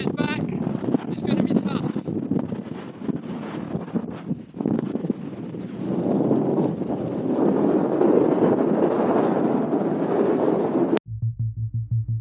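Strong wind buffeting the microphone in gusts, growing louder from about six seconds in. About a second before the end it cuts off abruptly to electronic music with a fast-pulsing low note.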